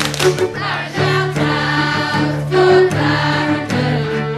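A group of voices singing a school house anthem in chorus, with sustained notes over instrumental accompaniment.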